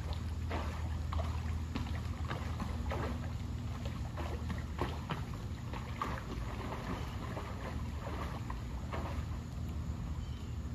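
Water splashing in a pool as a swimmer on a foam float kicks his legs, in irregular splashes about once or twice a second over a steady low hum.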